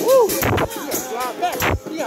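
A short rising-and-falling whoop, then loud booming hits at uneven spacing, about a second apart, over party music.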